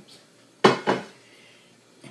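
Handmade wooden spoon knocking twice against cookware while the spaghetti and meatballs are stirred together, two sharp knocks about a quarter second apart, the first the louder.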